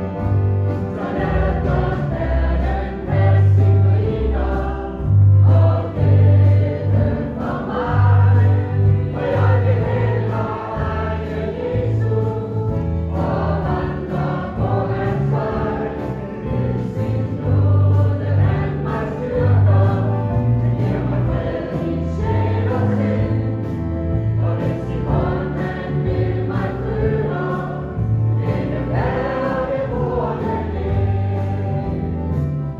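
Choir singing a gospel hymn over instrumental accompaniment, with a bass line moving note by note underneath.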